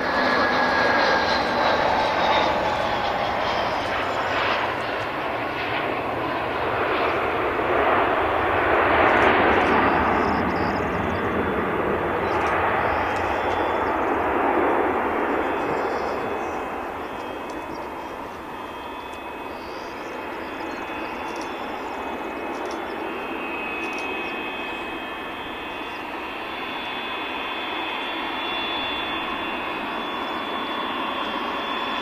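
Dassault Falcon 900EX's three Honeywell TFE731-60 turbofans running at taxi power, a steady jet noise with a high whine. It is loudest in the first half, with a falling whine in the first few seconds, and eases off about halfway through.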